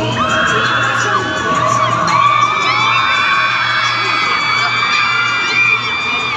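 Arena concert crowd screaming and whooping, many high voices holding long overlapping screams over loud amplified music with a steady low bass.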